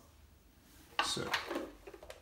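Light knocks and rubbing of a plastic transportable phone unit being shifted by hand on a stone worktop, against quiet room tone.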